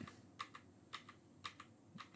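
Faint, irregular clicking of computer keyboard keys: a handful of separate keystrokes over near silence.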